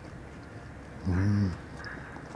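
A man's closed-mouth hum, a short 'mmm' of enjoyment while chewing, lasting about half a second about a second in, its pitch rising then falling.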